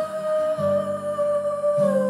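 Female pop vocal holding one long note that sinks slightly lower near the end, over a low accompaniment.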